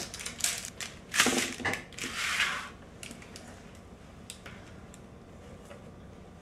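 Parchment paper rustling as it is peeled off the underside of a slab of chocolate-topped crackers, in three short bursts over the first three seconds, then only a few faint ticks.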